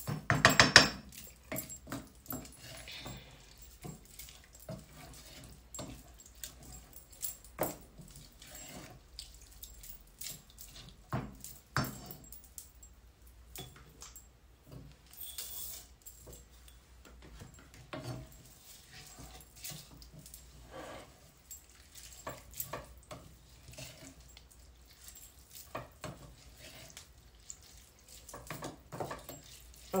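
Spoon stirring and scraping a pot of rice, sausage and added water, with irregular clinks and scrapes against the pot's sides. A brief, louder high-pitched sound comes about half a second in.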